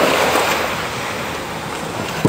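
Steady rushing noise of seaside surf and wind, loudest at the start and easing a little after.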